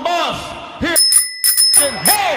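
A bright bell-like ding with several high ringing tones, lasting just under a second from about a second in. Before and after it, a man speaks loudly into a microphone with big swoops in pitch.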